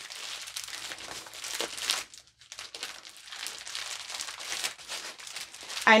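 Clear plastic bubble wrap around a rolled diamond-painting canvas crinkling as it is handled and turned over, with a brief pause just after two seconds.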